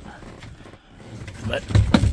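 A few light knocks and clicks near the end, as an unattached lower steering column part in a truck cab is gripped and moved.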